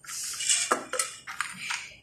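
Metal spoon and glass jar clinking as a milk drink is mixed in the jar: a few sharp clinks a little under a second in, with soft scraping and rustling before and after.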